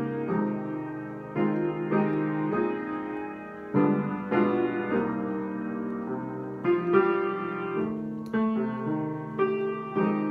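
Grand piano played solo: full chords struck about once a second and left to ring, in a slow, gentle flow.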